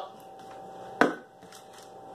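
A metal can set down on a kitchen counter: one sharp knock about a second in, over a faint steady hum.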